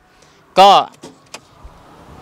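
A short spoken word, then two faint clicks from the car's open driver's door.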